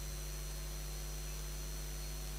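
Steady electrical mains hum with hiss on the open microphone feed, with a faint thin high whine over it.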